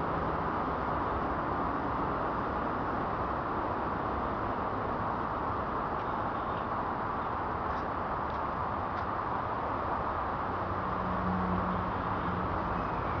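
Steady outdoor urban background noise like distant traffic, with a few faint sharp clicks about six to nine seconds in and a faint low hum near the end.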